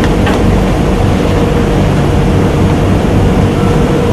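Steady loud hum and rushing noise with a constant low tone, unchanging, and a faint click just after the start.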